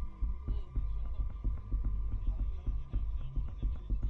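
Low, throbbing background music bed with a regular pulse in the bass and a sustained high drone over it.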